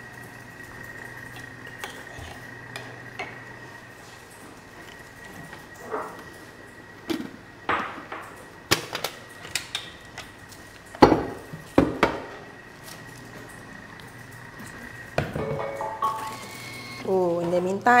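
Stainless steel Thermomix mixing bowl and spatula knocking and clinking against the counter as crumbly dough is turned out of the bowl, a handful of sharp knocks between about six and twelve seconds in.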